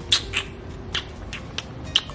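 Kissing noises made with the lips: about six short, sharp lip smacks spread over two seconds.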